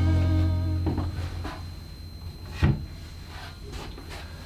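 Background rock music ends on a held guitar chord that fades out in the first second. A few knocks follow as hand tools are handled and set down in a plastic storage bin, the loudest about two and a half seconds in.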